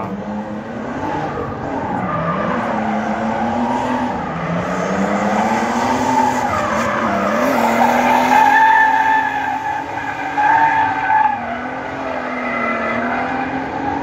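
Drift car's engine revving hard, its pitch rising and falling repeatedly, with tyres squealing as the car slides; loudest about eight seconds in.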